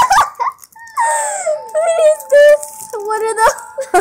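Young girls squealing and giggling in high voices, with one long drawn-out squeal through the middle.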